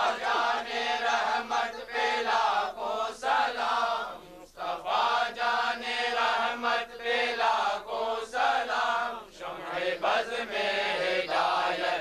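Men's voices chanting a devotional chant together in sustained phrases, with short breaks between phrases.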